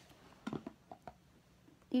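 Mostly quiet room with a few faint, short taps and clicks in the first second. A girl starts speaking right at the end.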